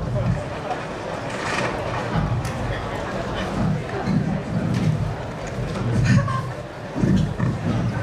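Indistinct voices talking in a large hall, with no clear words.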